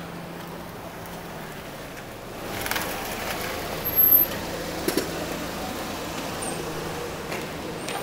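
Car engine idling close by, a steady low hum that gets louder about two and a half seconds in, with a brief louder burst midway and a couple of sharp clicks.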